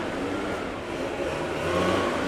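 Leaf blowers running with a steady engine drone and a faint whine, over street traffic noise.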